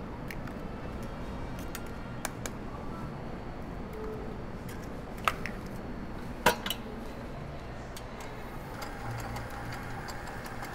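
Eggs being cracked and added to a stainless-steel stand-mixer bowl: a few scattered light taps and clicks of shell and hands against the bowl, the sharpest about six and a half seconds in, over a steady low kitchen hum.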